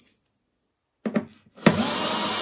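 Silence for about the first second, then a few small clicks, and then, from about 1.7 seconds in, a cordless electric screwdriver starting up and running steadily as it backs out a small screw.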